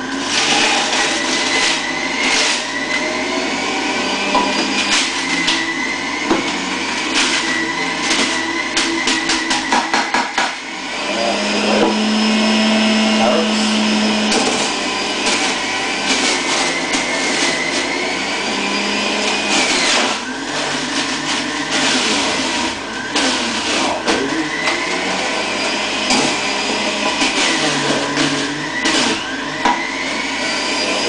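Electric centrifugal juicer running loudly while coriander and carrots are fed down its chute. Its whine keeps dropping in pitch and recovering as the motor takes the load of each piece. About a third of the way in there is a burst of rapid clattering as produce is shredded.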